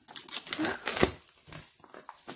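Clear plastic shrink wrap being torn and peeled off an album box, crinkling in dense, irregular crackles, with one sharp crackle about a second in.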